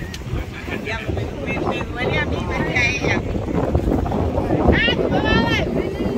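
Wind buffeting the microphone in a steady low rumble, with voices of people nearby; a high-pitched voice calls out about five seconds in.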